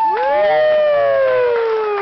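A voice holding one long note that swoops up and then slides slowly down in pitch, closing out the song.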